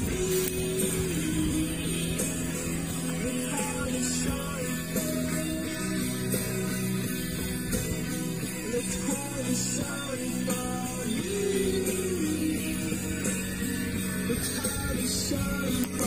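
Background music: a song with guitar and a singing voice at a steady level, cutting off abruptly at the very end.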